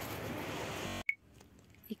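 Steady background noise in a shop. It is cut off sharply about halfway through and followed by near silence, with one brief high blip at the cut.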